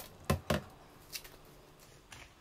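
A glass bowl of wet beans set down in a stainless steel sink: a sharp click, then two quick knocks about a quarter second apart, and a faint tick about a second in.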